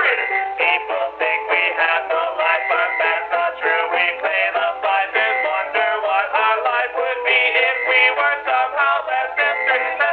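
Synthesized MIDI music from a PC sound card, a busy line of quick, short notes over chords.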